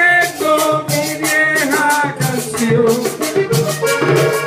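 Live vallenato instrumental passage: a diatonic button accordion plays a moving melody over its bass notes, with a steady rasping rhythm from a metal guacharaca and hand-drumming on a caja vallenata.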